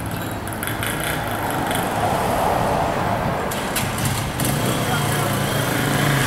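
Street ambience: steady traffic noise with motorcycle engines running, and indistinct voices in the background.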